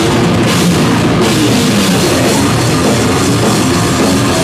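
Heavy metal band playing live: distorted electric guitars over a drum kit, loud and dense throughout.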